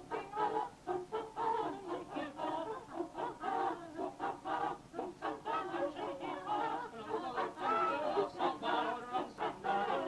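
Music: voices singing a song with a pulsing rhythm.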